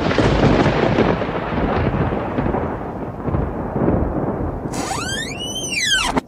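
Thunderclap sound effect: a sudden crash of thunder that rumbles and slowly dies away over about five seconds. Near the end a high cry glides up and then down in pitch.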